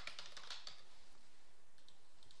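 Computer keyboard being typed on: a run of light keystrokes as a word is entered, most of them in the first half second.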